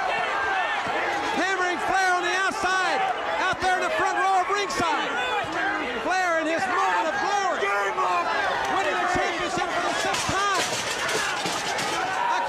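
Men's voices talking and shouting excitedly without a pause, with crowd noise underneath.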